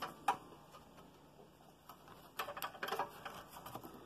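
Light handling clicks and taps as a wooden block is moved on the scroll saw's metal table and the blade is threaded through a drilled hole in it: a sharp click or two near the start, then a quick run of small ticks about two and a half seconds in. The saw is not running.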